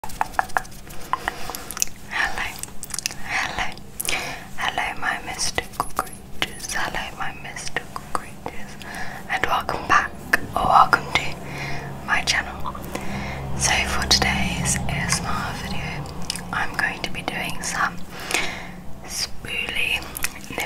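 Close-miked ASMR mouth sounds: quick wet clicks, lip smacks and nibbling noises made right at the microphone, mixed with soft whispery breaths.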